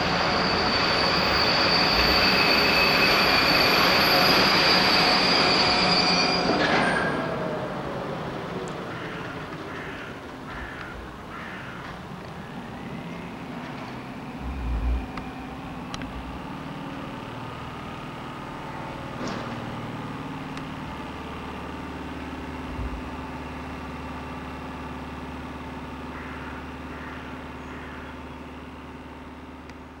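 ÖBB Class 1044 electric locomotive and freight wagons passing, with a loud, steady high-pitched squeal for the first several seconds. The sound then drops to a quieter train rumble, and a steady low hum joins in during the second half.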